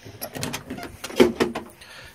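A few clicks and rattling knocks of an ambulance body's metal equipment compartment being handled, its door opened.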